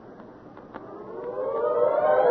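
A siren-like swelling tone: several pitches rise together and grow louder from about a second in, a dramatic transition cue after the line 'he did it'.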